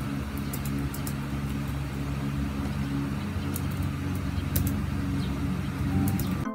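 Light clicks of laptop keys being typed on, scattered and sparse, over a steady low hum.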